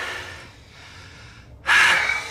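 A man breathing heavily: a breath at the start, then a louder, sharper breath near the end.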